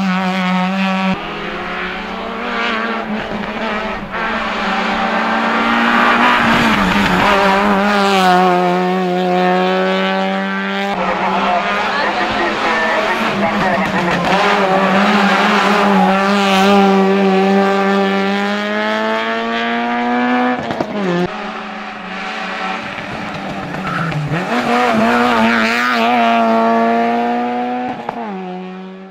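Peugeot 106 rally car's four-cylinder engine running hard at high revs up a hillclimb, its note held high and steady for long stretches and dropping briefly several times at gear changes.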